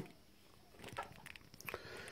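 Faint plastic clicks and rustling from hands working an RJ45 plug on a Cat5 lead into a server's serial port, starting about a second in after a near-silent moment.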